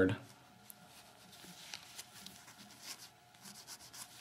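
Faint rubbing of a dry lens cloth wiped across a bare iPhone LCD panel, with a few soft scrapes and handling noises.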